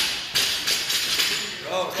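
Loaded barbell with bumper plates being lowered to a rubber floor: two sharp knocks in the first half second, then lighter metallic clicks and rattles of plates and collars on the bar sleeves.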